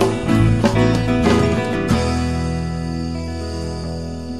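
A rock band with drums and guitar playing the last bars of a song: a few final accented hits, then about two seconds in the band lands on a closing chord that rings out and slowly fades.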